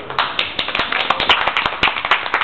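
A small audience clapping: quick, uneven hand claps.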